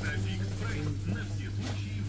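Shop background: a steady low hum with faint voices and background music.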